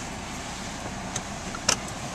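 Steady road and engine noise heard inside the cabin of a moving car, with a sharp click about three-quarters of the way through.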